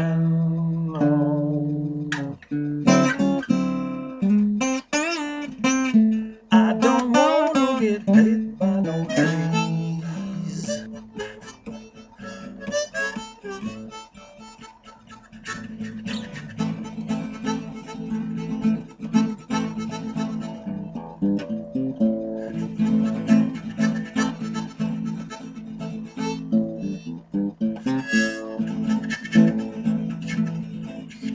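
Blues harmonica and acoustic guitar playing an instrumental break without singing. The harmonica bends its notes up and down over the guitar for the first ten seconds, the playing drops quieter for a few seconds around the middle, then picks up again with held harmonica chords over steady strumming.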